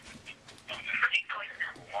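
A voicemail played back through a phone's loudspeaker, holding muffled, indistinct voices and shuffling as the phone changes hands between callers.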